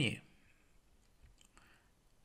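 The last syllable of a spoken word, then quiet room tone with a few faint, scattered clicks.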